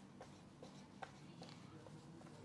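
Faint dry-erase marker strokes on a whiteboard as small circles are drawn, one short stroke about every half second, the one about a second in the loudest.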